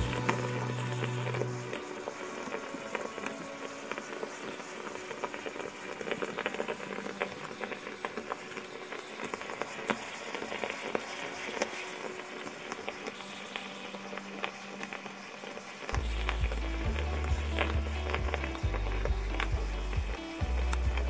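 Bialetti stovetop moka pot bubbling and sputtering on the burner as brewed coffee rises into the upper chamber, under background music. The music's bass drops away after about two seconds and comes back strongly near the end.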